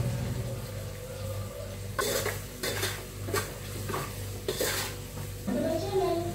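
Spoon and containers clinking against steel cooking pots: about six sharp clinks, roughly half a second apart, starting a couple of seconds in, over a low steady hum.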